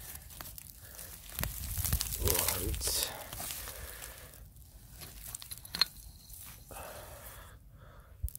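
Gloved hand scraping and raking through loose cinder-ash soil, with roots tearing and gritty clinker crunching as a glass bottle is uncovered. The scraping is loudest in the first few seconds, and a single sharp click comes about six seconds in.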